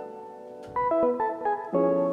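Piano chords from a chopped piano sample playing back: a chord fading away, then a short phrase of changing notes and chords from a little under a second in.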